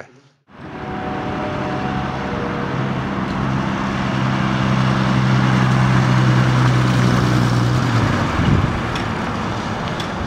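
The 1930 Willys Whippet's flathead straight-six running as the car drives past, a steady low engine note over road noise. It starts about half a second in, grows louder toward the middle, and its even note breaks off about eight seconds in.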